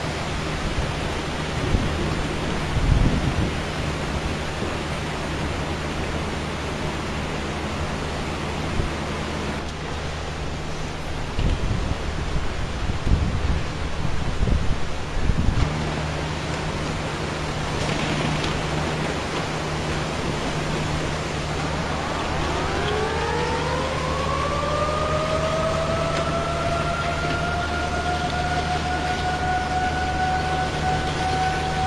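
Rushing floodwater surging through streets, a steady roar with a low hum underneath and a run of heavy thumps about halfway through. About 22 seconds in, a warning siren winds up, rising in pitch and then holding a steady wail.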